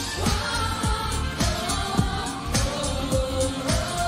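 Live J-pop dance track playing loud: a steady kick-drum beat of about two thumps a second under synth pads, with a voice singing held, wavering notes over the intro.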